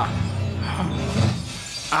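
Film soundtrack: glass shattering with a low rumble under dramatic score music, dying down near the end.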